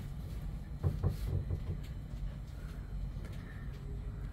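Faint clicks and taps of hands working a dial indicator set up on a diesel engine's valve rocker, over a low steady background rumble.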